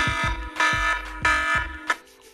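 Podcast intro music: a loud, dense chord sounds three times over a deep, pounding bass beat.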